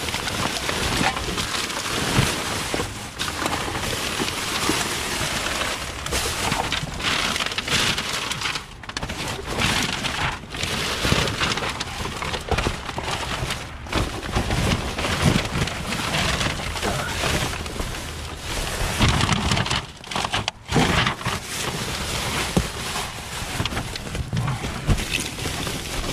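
Plastic bags and bubble wrap crinkling and rustling nonstop as rubbish is rummaged through by hand, with cardboard being shifted and a few sharp knocks.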